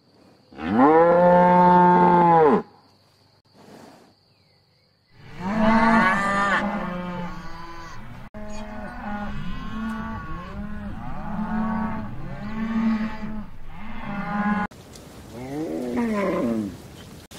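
Cattle mooing: one long, loud moo about a second in, then after a pause a run of shorter moos, about one a second, that cuts off shortly before the end.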